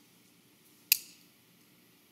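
A long-nosed butane utility lighter clicking once, a sharp snap about halfway in as its trigger is pulled to spark it for lighting a candle. Otherwise only a faint room hum.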